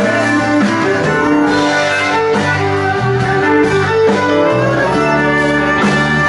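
Live band playing an instrumental break of a country-rock song, with guitar to the fore over bass, drums and keyboard, and a violin among the players.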